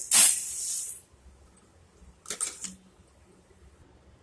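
A cup of granulated sugar poured into an empty stainless-steel pot: a loud rush of grains hitting the metal, lasting about a second.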